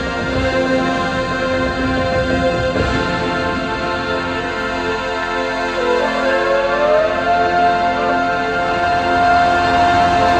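A marching band playing sustained chords. About six seconds in, one line slides upward and settles into a long held high note over the chord.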